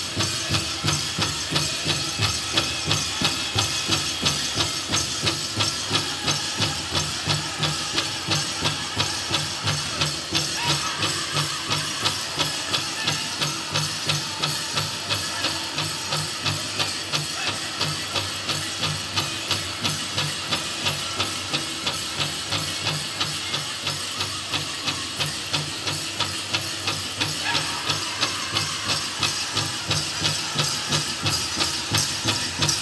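Powwow drum group playing a steady, fast beat on a big drum, about three beats a second, with singers' high voices over it.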